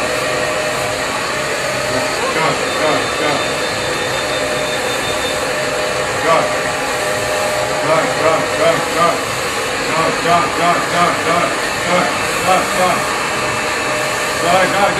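Handheld hair dryer blowing steadily at close range.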